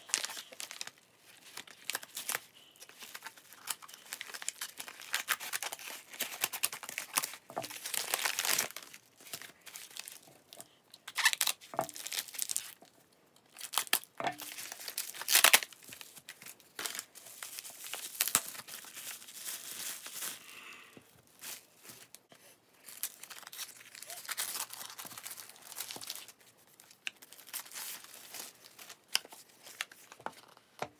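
A taped plastic mailer bag being cut and torn open, then bubble wrap crinkling and rustling as it is pulled off a small boxed deck: a long run of irregular rustles and tears, loudest about halfway through.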